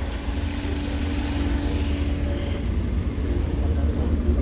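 A car engine idling steadily, a low rumble with a faint even hum over it.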